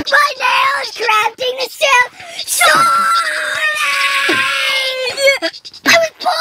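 A voice wailing and screaming wordless held notes that break off and start again every second or so, with a harsh, rough scream near the middle and a wavering note near the end.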